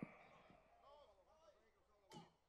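Near silence: a pause with only faint room tone.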